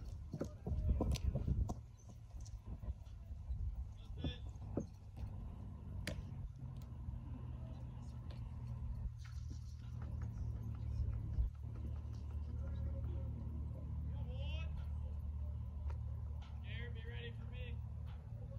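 Indistinct distant voices over a steady low rumble, with a few knocks in the first two seconds.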